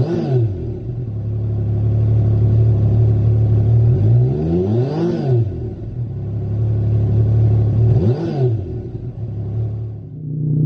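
Yamaha MT-09 Tracer's 847 cc inline-three engine through its stock exhaust silencer, idling steadily with three quick throttle blips: a rev dropping back to idle right at the start, a longer rise and fall about four to five seconds in, and a shorter one about eight seconds in.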